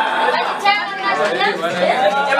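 Several voices talking over one another: the overlapping chatter of a small group, with no single clear speaker.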